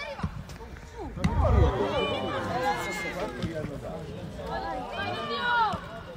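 Footballers shouting calls to one another across the pitch, several voices overlapping, with a sharp thump about a second in.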